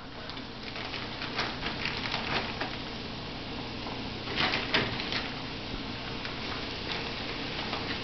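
Flour-dredged pheasant pieces frying in hot oil in a skillet: a steady sizzle with constant small crackling pops, with a louder burst about halfway through.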